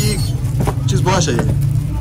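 Short bits of speech over a steady low rumble.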